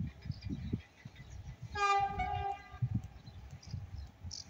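Horn of a distant CFR EA-class electric locomotive (EA 613) on an approaching train, sounding one blast of just under a second about two seconds in. Low rumbling buffets run underneath.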